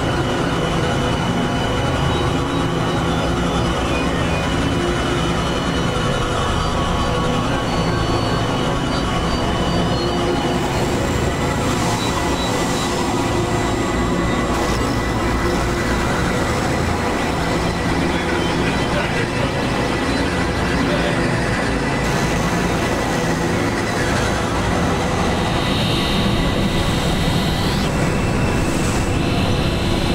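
Experimental electronic noise music: a dense, steady wash of synthesized drones and rumbling noise with many held tones layered together. Near the end, short high rising glides sweep up over it.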